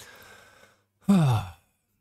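A man's breathy exhale, then about a second in a short voiced sigh that falls in pitch.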